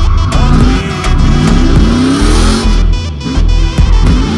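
Drift car's engine revving up and down, heard inside the cabin, under loud electronic music with a heavy beat.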